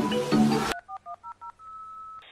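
Music with short repeated notes stops abruptly under a second in. It is followed by a quick run of about six telephone keypad (touch-tone) beeps and then one steady beep.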